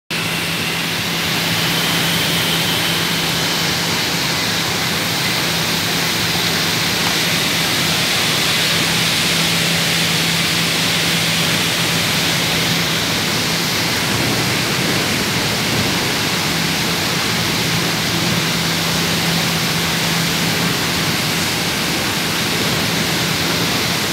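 Blast furnace cast house during hot-metal tapping: a loud, steady rushing noise as molten iron streams out and throws sparks. A low, steady hum runs underneath, dropping out briefly in the middle.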